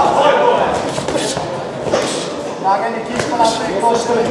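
Men shouting instructions at the ringside, with several sharp smacks of kickboxing strikes landing in between.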